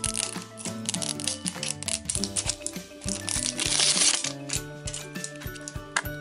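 Background music, with the crinkle and crackle of plastic shrink-wrap being torn off a small toy capsule. The crinkling is loudest a little past the middle.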